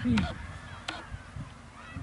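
Wind buffeting an outdoor microphone, a low rumble, with two sharp clicks about a second apart; a man's voice says one word at the very start.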